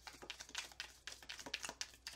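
A deck of round cards being shuffled by hand: a quick, irregular run of light card-on-card clicks and rustles.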